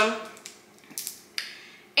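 A woman's drawn-out hesitation 'um' trailing off, then a quiet pause with two faint, brief soft noises about a second in.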